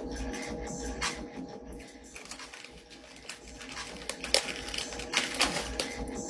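Snack bag crinkling and rustling in scattered little clicks as a hand digs into it, over a faint steady hum.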